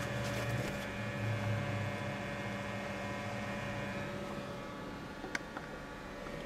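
A steady low hum with several faint tones inside a car cabin, heavier in the first couple of seconds. A few light clicks come about five seconds in.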